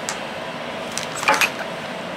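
Steady background hiss with a few brief clicks and rustles, mostly between one and one and a half seconds in, as small plastic toiletry tubes and bottles are handled over a clear plastic pouch.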